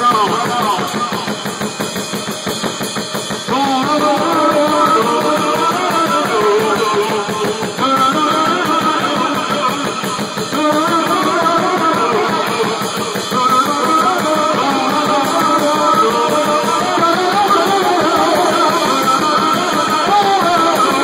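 Loud live noise-rock from a lone drummer: fast, dense drumming on a drum kit under distorted, wavering pitched tones. The sound gets fuller about four seconds in.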